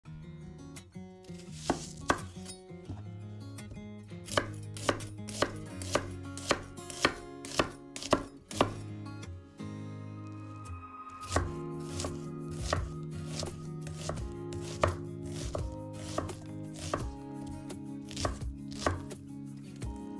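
Chef's knife cutting an onion on a wooden cutting board, a series of sharp knocks of the blade striking the board. The loudest come about two a second between about 2 and 9 seconds in, and quicker, softer chopping follows after about 11 seconds.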